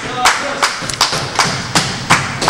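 Steady rhythmic clapping in unison, about two and a half claps a second, echoing in a large hall, with faint voices underneath.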